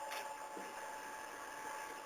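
A pause with no speech: steady low hiss of background line noise, with a faint steady tone running through it.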